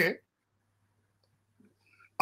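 A man's speech breaks off just after the start, followed by near silence with only a faint, steady low electrical hum.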